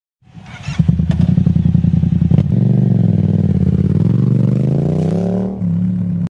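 Yamaha MT-07 parallel-twin engine running through an aftermarket Arashi exhaust. It starts with uneven, lumpy firing pulses, then from about two and a half seconds in settles into a steadier, higher-revving note that climbs a little and falls back near the end.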